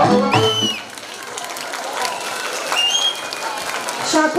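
Traditional folk music ends under a second in and the crowd applauds. Two brief high whistle-like sounds rise above the clapping.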